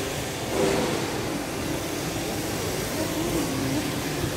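Steady background hum of a large indoor shopping mall, air-handling noise with a faint wavering murmur, like distant voices, over it.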